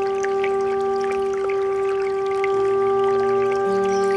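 Bansuri flute holding one long, steady note over softer low guitar notes that change twice, about two and a half seconds in and near the end. A small brook trickles faintly underneath.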